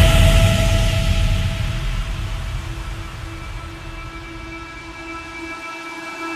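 Electronic dance music in an instrumental breakdown: a deep bass note starts loud and fades away over about five seconds beneath held synth chords.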